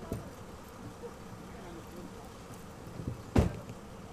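Outdoor ambience with a steady low hum or buzz and a few dull knocks, the loudest about three and a half seconds in.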